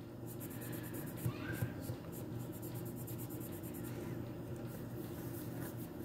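Colored pencil shading on paper: quick, rapid back-and-forth scratching strokes, faint over a steady low background hum.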